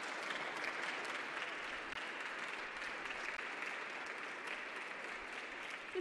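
A group of people clapping: steady, even applause that greets an arriving guest.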